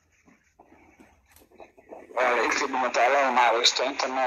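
Speech only: near silence for about two seconds, then a voice speaking loudly, with a narrower, radio-like sound.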